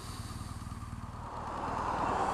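BMW R1200GS boxer-twin engine running at low speed, heard from the rider's helmet camera, with road and wind noise growing louder over the second half.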